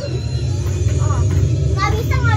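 Children's high voices calling out in short bursts, about a second in and again near the end, over a loud steady low rumble.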